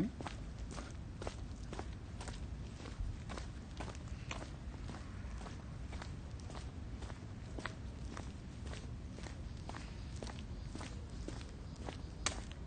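Footsteps of a person walking at a steady pace, about two steps a second, over a low steady rumble on the microphone.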